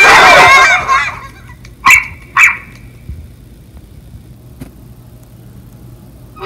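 A dog barking: a loud bark at the start that trails off within about a second, then two short sharp barks about two seconds in.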